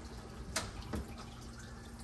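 Water trickling and dripping through a reef aquarium's sump, with two sharp clicks about half a second and one second in as the stand's cabinet door is handled. A low steady hum comes in about a second in.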